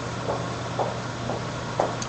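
Room tone in a lecture pause: a steady low hum over background hiss, with a few faint brief murmurs.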